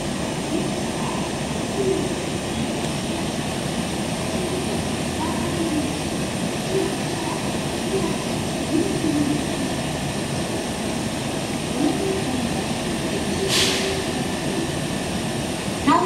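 Standing JR 225-5000 series electric train, doors open, with a steady whir from its onboard equipment, faint voices in the background, and one short sharp hiss about three-quarters of the way through.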